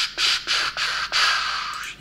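A man making hissing "tsch" noises with his mouth: a few short ones, then a longer one that fades out near the end.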